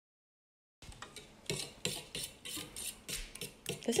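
Egg, milk and cinnamon batter being beaten in a stainless steel bowl, the utensil clicking and scraping against the metal in an irregular run of taps, about two to three a second, starting about a second in.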